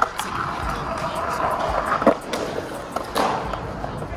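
Skateboard wheels rolling over smooth concrete, with sharp clacks of the board a little after two seconds and again around three seconds in.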